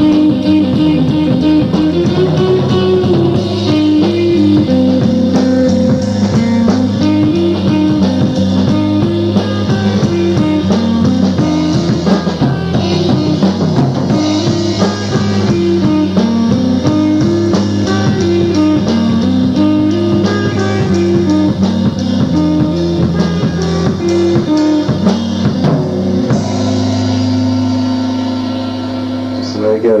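Live rock band playing an instrumental passage: drum kit, electric guitar and bass working through a repeating riff that climbs and falls. About four seconds before the end the band lands on a held chord with a cymbal wash, which then cuts off.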